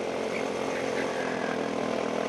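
Go-kart's small engine running steadily at speed, heard from on board the kart.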